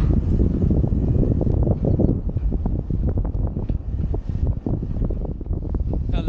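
Wind buffeting an action camera's microphone: a loud, irregular low rumble full of crackling pops, easing a little after about two seconds.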